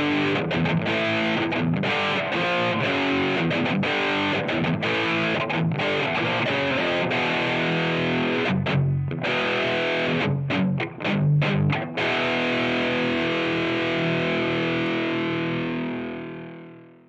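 Electric guitar played through Amplitube 5 SE's Mesa Triple Rectifier amp simulation: a heavily distorted, high-gain rhythm riff of chords with a few short breaks, ending on a held chord that rings out and fades near the end.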